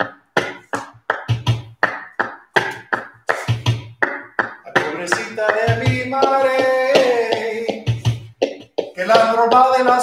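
Buleria rhythm of sharp percussive strikes, about three a second, with a deep thump every second or so. A man's voice comes in about five seconds in, singing a line of flamenco cante over the rhythm.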